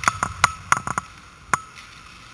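Irregular sharp clacks of hockey sticks and puck on the ice, about eight in two seconds, most of them in the first second.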